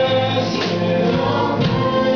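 Live worship band playing a gospel song: a man sings lead over keyboard, electric guitars and drums, with other voices singing along.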